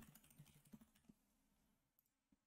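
Faint computer keyboard keystrokes, a few short taps in about the first second, then near silence.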